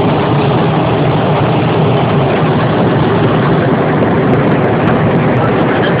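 Loud, steady engine and road noise inside a semi-truck's cab.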